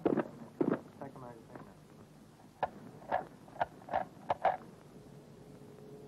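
A brief shout, then rifles firing blank rounds: about six short, sharp reports in quick succession over about two seconds.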